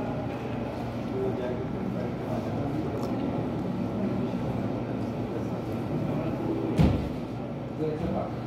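Restaurant background din: indistinct voices and room noise running steadily, with one sharp thump near the end.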